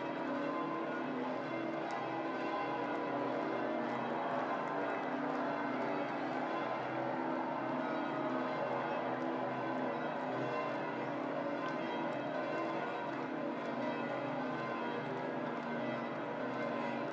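Church bells pealing, many overlapping bell tones ringing on steadily without a break.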